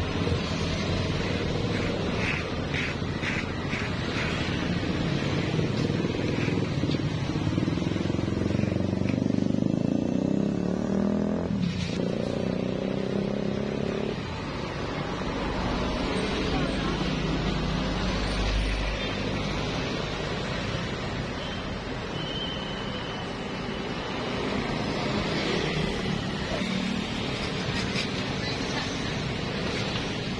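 Road traffic passing with voices in the background, a steady mix with a deeper rumble swelling about fifteen seconds in as a vehicle goes by.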